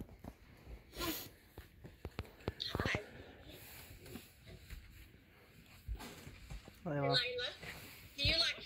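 Quiet room with a brief rustle about a second in and a few soft clicks, then a short stretch of a person's voice near the end, words unclear.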